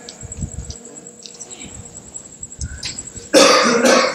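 A person coughs once, loudly, near the end.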